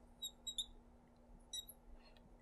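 Faint marker squeaks on a glass lightboard as arrowheads are drawn on a pair of axes: four short, high squeaks, three in quick succession early on and one about a second and a half in.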